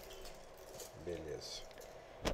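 A short, soft murmur of a voice about a second in, over faint small scrapes and clinks of a wooden stirrer being worked in a coffee cup.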